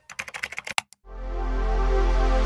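A computer keyboard typing sound effect, a quick run of about ten key clicks in under a second. About a second in, a swelling music chord with a deep bass note comes in and holds.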